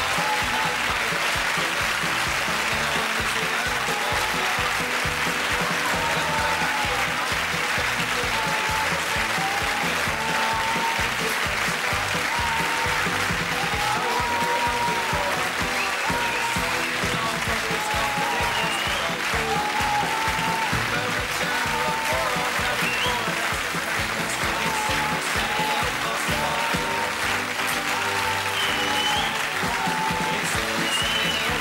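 Sitcom closing theme music playing over steady studio audience applause.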